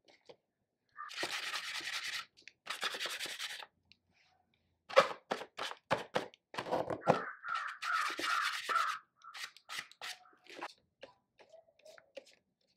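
A marker's tip rubbed and dabbed on a paper art-journal page: two bursts of scrubbing in the first few seconds, then a run of quick short strokes about halfway through, then more rubbing and a few light taps near the end.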